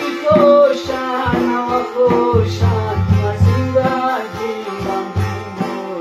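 A man singing a Khowar ghazal in a gliding, ornamented voice over a Chitrali sitar, a long-necked lute, plucked in a steady rhythm of about two strokes a second.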